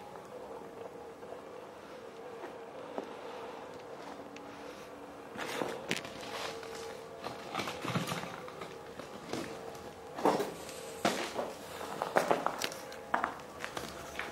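Footsteps on a concrete floor strewn with rubble and grit, irregular from about five seconds in and sharper near the end, over a faint steady hum.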